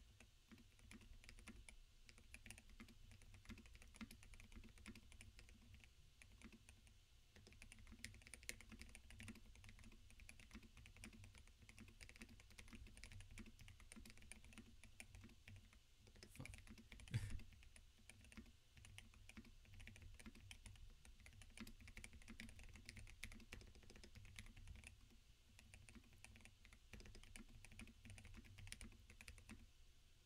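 Continuous fast typing, at about 79 words a minute, on a mechanical keyboard with lubed and filmed Holy Panda tactile switches, Durock V2 stabilised spacebar and a foam-modded case, with one louder knock about seventeen seconds in.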